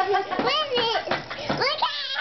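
Young children's voices, high-pitched and excited, calling out without clear words while they play, with pitch sweeping up and down twice.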